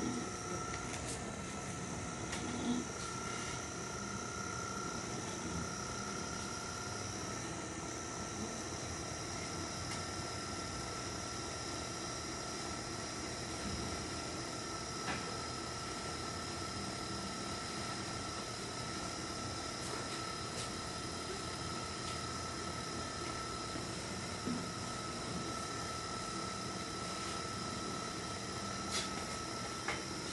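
Electric potter's wheel running at a steady speed with a constant whine, while a trimming tool scrapes the clay foot of the turning pot. A few light knocks come through.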